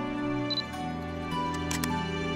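A handheld camera's shutter clicking a few times, the sharpest pair of clicks near the end, with a short high beep about half a second in, over slow, soft background music.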